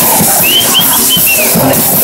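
A street brass band playing live, with a bass drum keeping a steady beat under the horns. Short high swooping notes ring out above the band.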